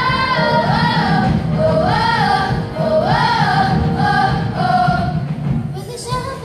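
Children's choir singing together in a hall, the melody rising and falling in phrases of about a second. The singing breaks off and drops in level just before the end.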